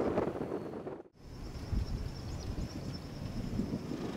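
Wind buffeting the microphone outdoors, a low rumbling noise. About a second in, the sound drops out briefly at an edit, then the wind resumes with a faint steady high tone over it.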